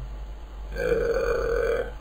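A man's drawn-out, rough 'uhh' of hesitation, about a second long, starting a little past the middle.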